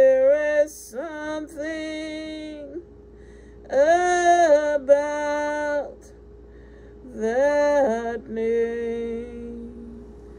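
A woman singing a slow worship song in long held notes, in short phrases with brief pauses between them.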